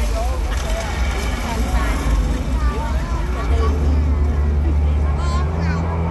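Spectators' voices chattering and calling out over a deep, steady low rumble that grows louder about three and a half seconds in, the start of the show's soundtrack, with the hiss of the fountain jets.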